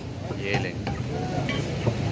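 Busy market background din: a steady, even noisy hubbub with a low hum underneath and a few faint short sounds on top.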